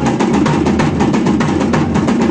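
Rapid, even drumming, with strokes following each other several times a second.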